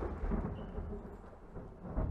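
A low, rumbling noise with no clear tune in the stage performance's soundtrack, swelling again near the end.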